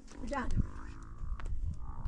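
A brief spoken word or exclamation falling in pitch about a third of a second in, followed by a low outdoor rumble.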